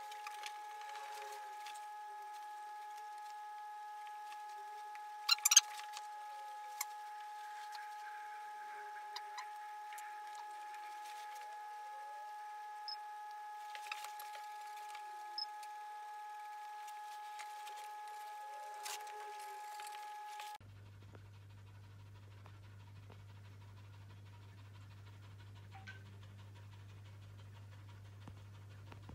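A steady, high-pitched electronic whine made of several tones, with scattered knocks and thuds, the loudest about five seconds in. After about twenty seconds the whine stops and gives way to a quieter low hum, with a dog panting.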